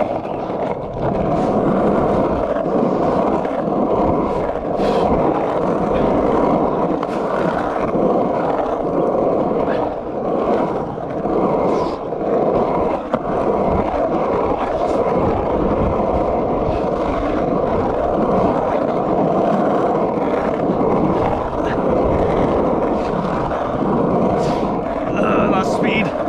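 Skateboard wheels rolling on the asphalt of a pump track: a loud, steady rumble with a faint steady whine through it, as the board is pumped around the rollers and banked turns.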